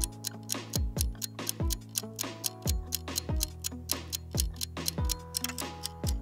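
Quiz countdown-timer music: fast, even clock-like ticking over a low held bass tone, with a deep thud about once a second.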